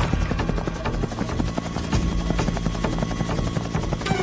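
Helicopter rotor chopping in a fast, even beat, with the song's music running underneath.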